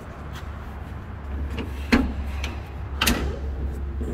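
The hood of a 1970 Chevelle being unlatched and raised: a few metal clicks and clunks from the latch and hinges, the loudest about three seconds in, over a steady low hum.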